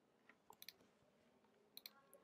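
Near silence, with a few faint computer mouse clicks about half a second in and again near the end.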